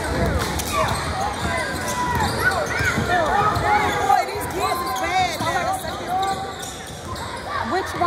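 A basketball being dribbled on a hardwood gym floor, with sneakers squeaking and players' and spectators' voices echoing in the gym.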